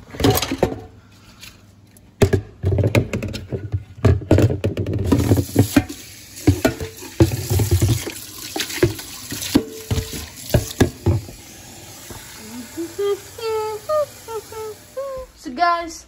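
Kitchen tap running into a plastic pitcher in a stainless steel sink, filling it with water, with knocks of the pitcher against the sink in the first few seconds.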